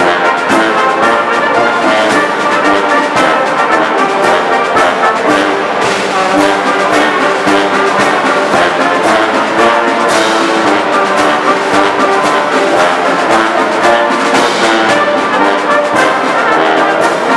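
Military brass band playing a march: trumpets, trombones and bass horn carrying the tune over a steady drum beat.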